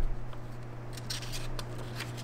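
Pages of a paper instruction booklet being turned by hand: soft paper rustling, with a few short crackles about a second in, over a low steady hum.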